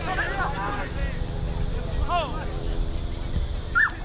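Short shouted calls from players on a rugby league field, a quick run of them at the start, another about two seconds in and one just before the end, over wind rumbling on the microphone.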